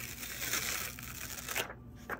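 Thin clear plastic backing sheet crinkling and crackling as it is peeled off a new, unused clear script stamp. The crackling rustle runs for about a second and a half, then dies away.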